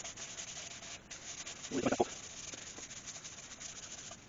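Cloth pad rubbing sanding sealer onto the back of an ash bowl: a steady dry rubbing hiss with a fine, fast grain.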